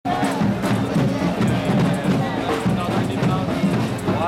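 A marching protest crowd: many voices mixed with music and sharp, rapid percussion strokes.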